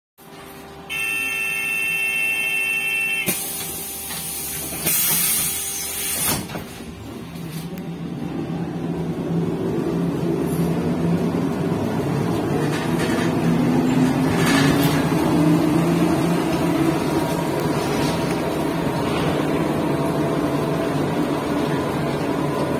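Inside a Škoda 15Tr03/6 trolleybus, a steady door warning tone sounds for about two seconds. The doors then close with a loud hiss and several knocks. The trolleybus pulls away, and its traction drive's hum and whine rise in pitch as it gathers speed.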